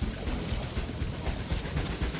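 Steady rumbling hiss of a small fishing boat on the open water: wind and water noise with no distinct events.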